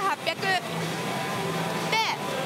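Pachinko parlor din: a steady wash of noise from the machines, with brief voice-like calls just after the start and again at the end.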